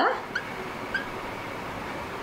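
Marker squeaking on a glass writing board as words are written: a couple of short, high chirps over a steady background hiss.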